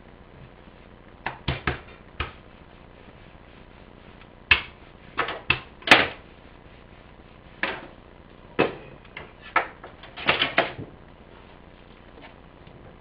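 Irregular sharp knocks and taps on a wooden cutting board as dough is worked by hand, in clusters of two to four, about fifteen in all.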